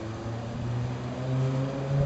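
Simulated engine idle from an RC tank's sound unit: a steady low hum with a slight waver in pitch.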